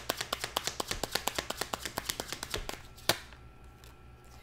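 A deck of tarot cards being shuffled hand to hand, the cards clicking against each other about ten times a second. The clicking fades out about three seconds in and ends with one sharper snap.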